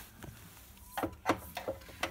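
A few light knocks and clicks, starting about a second in, of electrical test gear and leads being handled.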